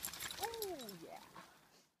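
A wet dog shaking water from its coat, a quick spray of crackling ticks, while a voice calls out with a long falling then briefly rising pitch; the sound fades out near the end.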